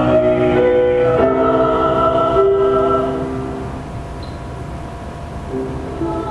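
A male and a female voice sing a duet in harmony, holding long notes. The singing drops away about four seconds in, and the female voice comes back in near the end.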